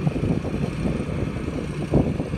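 John Deere 8430 tractor's diesel engine running steadily as it pulls a disc harrow across the yard, with wind buffeting the microphone.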